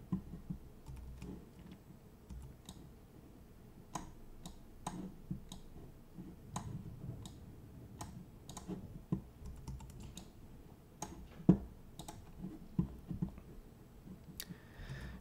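Faint, irregular clicking of a computer mouse and keyboard, a few clicks a second, with one sharper click about eleven and a half seconds in.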